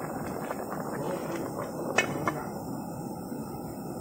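A large aluminium pot of water at a full rolling boil, bubbling steadily, with whole snakehead fish being boiled in it. Two brief clicks come about two seconds in.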